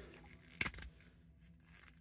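Faint plastic handling: a brief click or two about half a second in as the action figure's leg is bent at its double knee joint, otherwise nearly quiet room tone.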